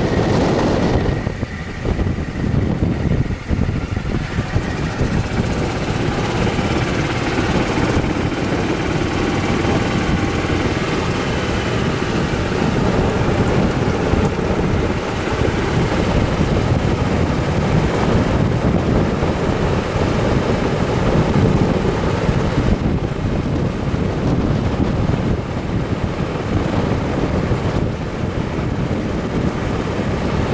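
A golf cart driving along with steady wind noise on the microphone and the rumble of its tyres rolling over a paved path and then a gravel road.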